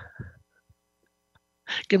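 Video-call audio that is mostly silent: a faint steady tone and a few soft low sounds in the first half-second, then silence until a voice starts speaking near the end.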